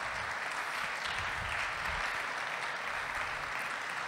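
Audience applauding steadily, an even wash of clapping.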